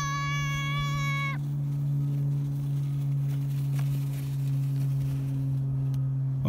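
A child's high-pitched squeal, held steady for about a second and a half and then cut off, over a steady low hum.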